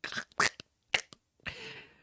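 A man laughing in short breathy bursts, ending in a drawn-out breathy exhale.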